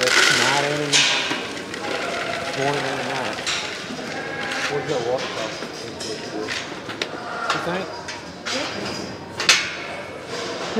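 Indistinct voices in a large, echoing livestock barn, with several sharp clanks of feed buckets and steel pen panels, the loudest near the end.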